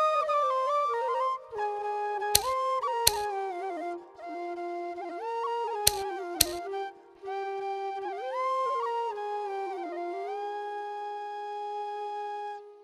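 Background music: a flute playing a slow melody in phrases with short breaks, the notes sliding into one another. Two pairs of sharp taps cut in during the first half.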